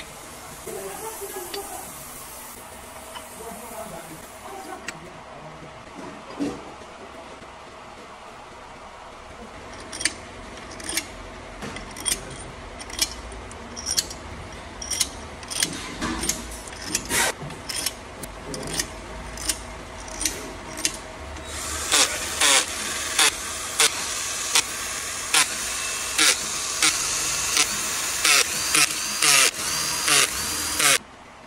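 Metal engine parts clicking and knocking as crankshaft main bearing caps and their bolts are set into an aluminium engine block, with sharp taps coming every second or so from about ten seconds in. Near the end a cordless drill-driver runs steadily, with a sharp click every half second or so, as it spins the cap bolts in.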